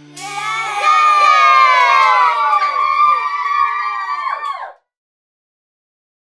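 A group of children cheering and shouting "yay", many high voices overlapping with falling pitch, cutting off suddenly just before the end.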